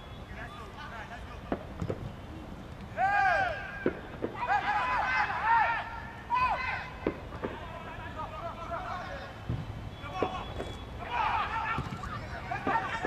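Footballers shouting calls to one another during play. The calls come in several loud bursts, strongest in the middle, with a few short thuds of the ball being kicked between them.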